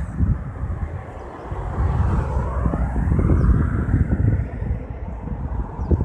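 A passing vehicle: a low rumble that swells over a couple of seconds to a peak around the middle and then fades.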